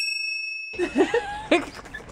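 A single bright bell ding, an edited-in sound effect, rings for most of a second and then cuts off abruptly. Voices follow.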